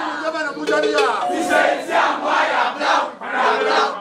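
A crowd of men shouting together, many voices raised at once in loud cries, with a brief lull about three seconds in.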